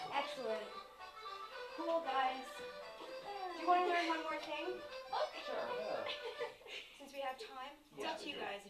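Indistinct voices of adults and children talking among themselves, with music playing.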